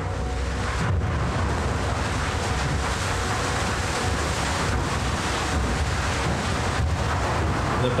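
Loose quarried rock tumbling and sliding: a steady, gritty rumbling noise with a strong low rumble underneath.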